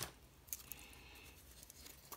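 Faint handling of a small cloth drawstring bag as it is picked up: a single soft click about half a second in, then quiet rustling and a few faint ticks near the end.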